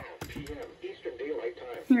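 A NOAA Weather Radio broadcast voice reading a weather report from a Midland weather radio's small speaker, fairly quiet in the room. A person says "Here" near the end.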